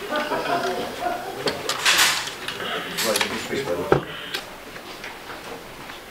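Low, indistinct voices with a rustle, then a single sharp click or knock about four seconds in, after which it quiets down.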